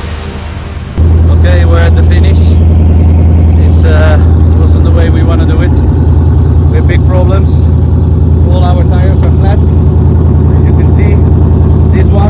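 Background music cuts off about a second in, replaced by a man talking over a loud, steady low rumble.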